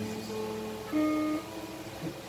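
Live guitar music: held notes ringing on, with a louder new note struck about a second in.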